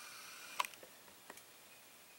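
A few faint clicks: a sharp click a little after half a second in, then two softer ticks, over a faint high hum that stops at the first click.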